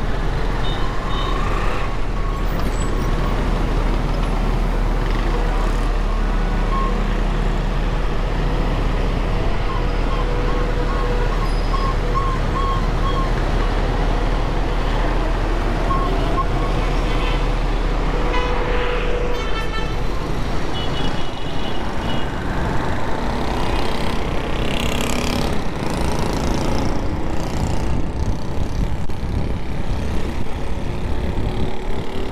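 Street traffic: a steady rumble of vehicles with horns tooting now and then, including a cluster of short horn beeps around twenty seconds in.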